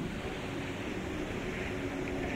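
A pause in speech: steady hiss of the recording's background noise, with a faint low hum.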